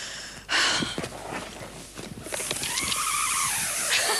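A stuntman's wire-and-rope descent rig running as he drops in on a line: a short rush of noise about half a second in, then a loud hiss with a whirring tone that rises and falls as the line pays out and slows.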